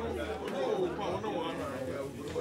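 Several people talking at once in overlapping chatter.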